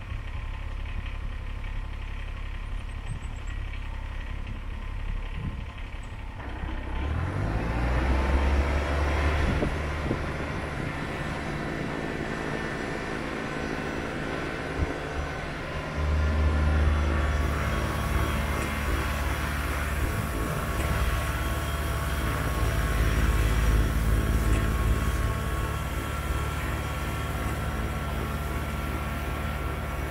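Kubota BX compact tractor's diesel engine with a front-mounted BX2755HD snowblower, idling at first. About a quarter of the way in, the sound rises in pitch and grows louder. It then runs steadily under load while the blower throws snow.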